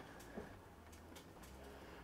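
Near silence, with a faint bird call in the background.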